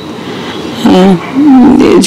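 A woman's voice: after a short lull, a few drawn-out, wavering vocal sounds that glide down and then up and down in pitch, leading into the word "এই".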